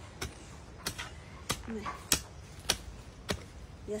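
A long-handled metal garden hoe striking into dry, stony soil, digging planting holes. About six even chops come roughly every 0.6 seconds.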